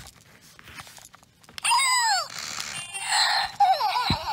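Zhu Zhu Pet robotic toy hamster running with its repaired back button working again: faint clicks for the first second and a half, then electronic squeaks that fall in pitch about two seconds in and again near the end, with a hissing stretch between them.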